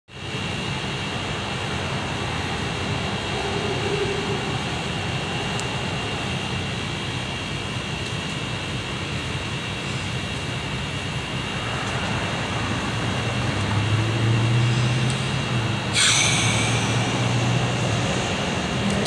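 Steady mechanical background drone with a constant thin high whine. A lower hum swells after about twelve seconds, and a brief rush of noise comes near the end.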